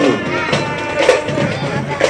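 School marching band (fanfara) playing in a street parade, with long held notes and faint drums.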